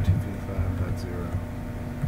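A steady low hum with a few faint, short keyboard clicks as a command is typed.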